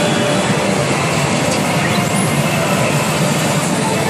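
Loud, steady din of a pachinko hall with no break: the CR Ikkitousen SS2 pachinko machine's own music and effects mixed into the roar of the surrounding machines.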